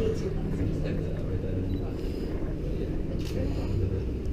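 A steady low rumble with faint, indistinct voices.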